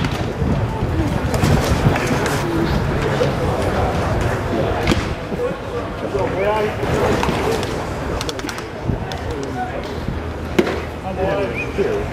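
Ballpark crowd chatter: indistinct voices of spectators and players over steady background noise, with a couple of sharp knocks, one near the middle and one late.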